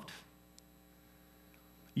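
Faint steady electrical hum in the room tone of a pause, near silence after the last word fades out in the first moment.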